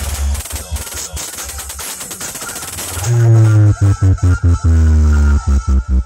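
Electronic dance music played very loud through the Power Music DJ speaker-box sound system. For the first three seconds the bass drops out under a dense, rapid stuttering roll. About halfway in, the heavy bass comes back, chopped into rhythmic pulses with downward-gliding notes.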